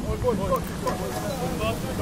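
Indistinct voices of rugby players and spectators calling out across the pitch, over a low rumble.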